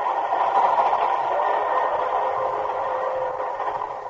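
Radio-drama sound effect of a passenger train under way: a steady rushing noise that swells just after the start and eases off slightly toward the end.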